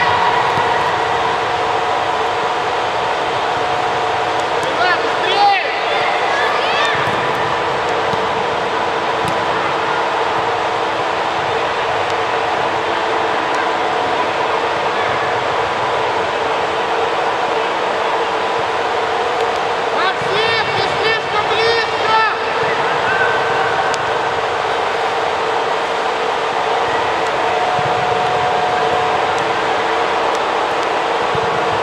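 Ambience of a youth football match in a large indoor hall: a steady hum and hiss, with young players' shouts about five seconds in and again in a cluster around twenty seconds in.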